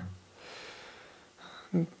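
A quiet breath drawn in, then near the end a very short voice sound.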